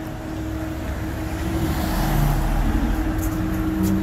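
City street traffic: a vehicle passes, its rumble swelling about two seconds in and fading, over a steady hum.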